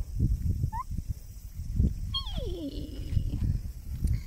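A woman imitating a sika deer's call: a short rising squeak about a second in, then a long call that slides down in pitch and settles into a held low note.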